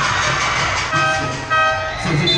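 Two short horn toots, about half a second apart, over the steady noise of a crowded basketball gym.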